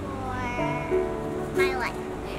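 A child's voice meowing like a cat, with a pitch glide that falls near the end, over soft background music with held notes.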